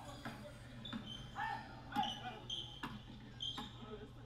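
Basketball bouncing on a hardwood gym court during play, with short high sneaker squeaks, faint throughout. The knocks come at irregular spacing, about half a dozen in all.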